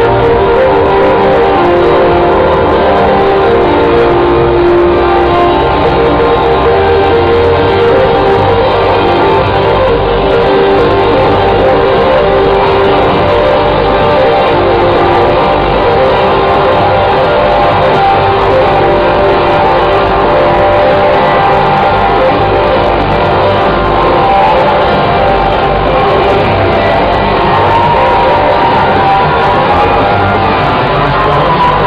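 Trance DJ set playing loud over a festival sound system, heard from within the crowd: continuous music with sustained synth tones over a steady low beat.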